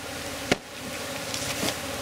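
Hollow coconut log knocked to shake out the Asian honey bees (Apis cerana) nesting in it: one sharp knock about half a second in and a lighter one later. Under the knocks runs the steady hum of the disturbed, agitated colony.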